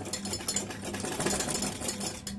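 Sewing machine running, stitching quickly through layered cotton fabric with a fast, even ticking, and stopping near the end.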